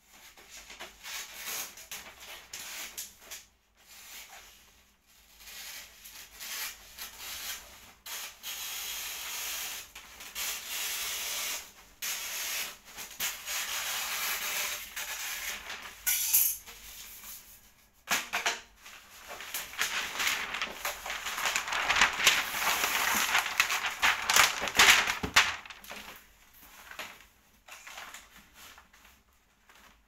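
Gift wrapping paper being torn and pulled off a large cardboard box, crinkling and ripping in irregular bursts. It is loudest and densest about two-thirds of the way through.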